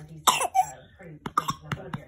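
A toddler gives one short cough with a falling voice while eating, with noodles still in his mouth. It is followed by a quick run of sharp clicks and knocks from the phone being handled against the couch.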